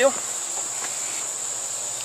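Insects calling in a steady, high-pitched chorus, one unbroken shrill tone.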